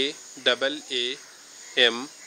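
Steady, high-pitched chirring of insects in the background, under a man's short spoken syllables.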